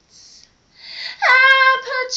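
Young woman singing a cappella. After a short pause, her voice slides up into a held note about a second in, then moves on to quicker sung syllables.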